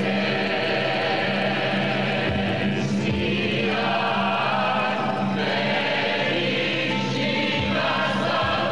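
A choir singing with musical accompaniment, the voices holding long, steady notes.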